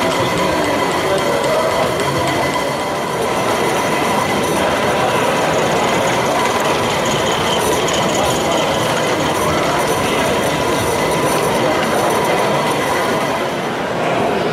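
Model railway trains running on an exhibition layout: a steady rolling noise from the track, under the general hubbub of a busy hall.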